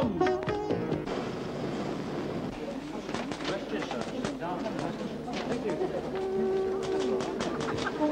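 Film soundtrack: a voice trailing off in the first second, then a busy background of voices with many irregular short clicks, and a few held music notes near the end.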